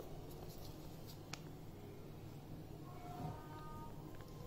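Quiet room tone: a low steady hum, with one faint click about a second in and soft handling sounds.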